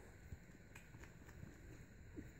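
Near silence, with faint low rustling and a few soft ticks about a second in: French bulldog puppies shifting about on a fleece blanket.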